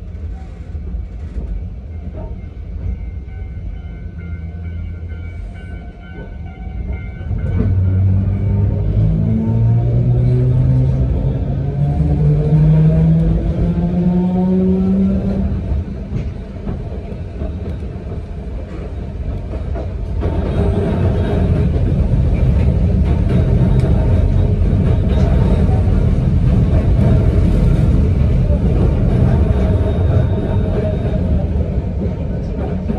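Inside an electric railcar of the narrow-gauge Yokkaichi Asunarou Railway: after a quieter start, the train pulls away about seven seconds in and its traction motor whine rises steadily in pitch for about eight seconds. The whine then drops out, leaving a steady rumble of wheels and running gear that grows louder about twenty seconds in.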